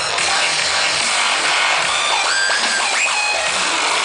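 Loud electronic dance music in a dubstep style, played over a festival sound system and heard from within the crowd. Tones slide up and down in pitch through the middle of it.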